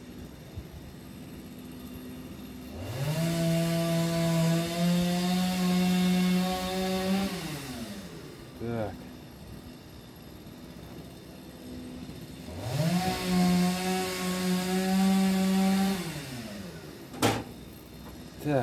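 A chainsaw revved up to full speed and held while sawing, twice, for about five and four seconds, each time dropping back down to idle. A single sharp click comes near the end.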